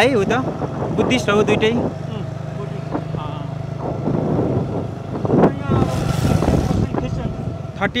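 Engine of the moving vehicle carrying the camera running steadily at road speed, a low even drone, with a short rush of noise about six seconds in.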